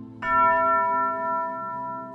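A single tubular bell hanging from a wooden stand, struck once with a mallet about a quarter second in, then ringing on with several clear overtones and slowly fading.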